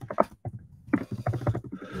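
Computer keyboard typing: a quick, uneven run of key clicks as a short search phrase is typed.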